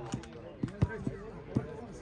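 A few short dull thuds of a football being struck on an artificial-turf pitch, the loudest about a second in, over distant shouting players' voices.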